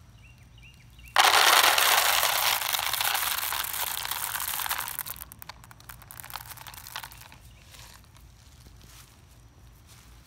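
A sudden loud rustling, crinkling noise starting about a second in, fading over about four seconds, then a few scattered crackles.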